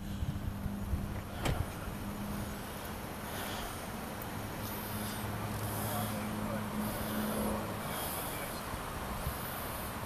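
Car engine idling with a steady low hum, and a single sharp knock about a second and a half in.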